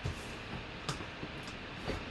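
Hands handling a cardboard box: a soft thump at the start, then a few light taps and clicks.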